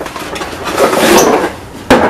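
Cardboard box and fabric rustling as a baby carrier is pulled out of its packaging, with a sharp knock just before the end.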